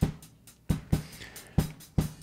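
Drum-kit sample playing through a gentle de-hiss gate-filter: about five sharp drum hits, each letting the highs come through, with quiet gaps between them where the filter steps on the treble.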